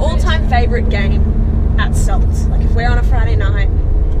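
Steady low rumble of a moving car heard from inside the cabin, under two women talking.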